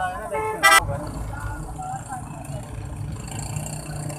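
A vehicle horn gives one short, loud toot about half a second in, over the steady low rumble of road traffic. Faint voices can be heard in the street noise.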